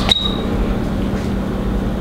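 A steady low mechanical hum with a constant tone, with a single sharp click and a brief high ring just after the start.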